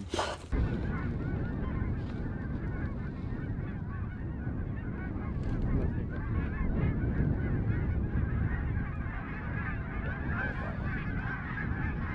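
A large flock of geese flying overhead, a dense continuous chorus of many overlapping honks and calls.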